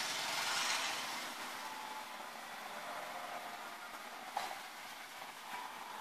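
Faint steady background hiss that eases after the first second or so, with a single click about four and a half seconds in.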